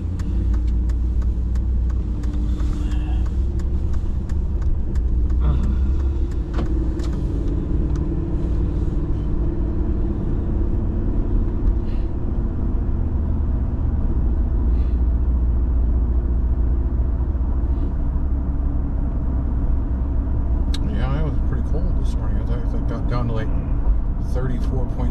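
Car cabin road noise: a steady low rumble of engine and tyres as the car pulls away from a traffic light and drives on.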